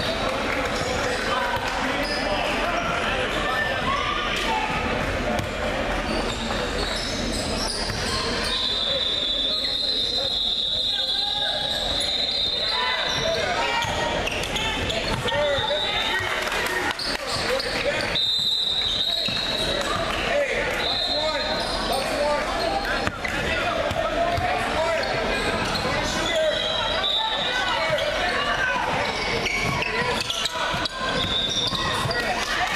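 A basketball being dribbled on a hardwood gym floor amid indistinct chatter, echoing in a large gym. A high steady whine comes and goes several times.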